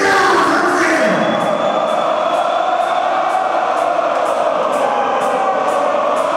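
Live heavy metal concert heard from the audience: a large crowd singing along in chorus over sustained notes from the band.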